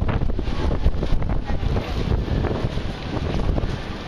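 Wind buffeting the microphone in an uneven, low rumble, over the general noise of a busy street crowd.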